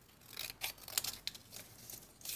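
Scissors snipping through paper journaling cards in a series of short, irregular cuts.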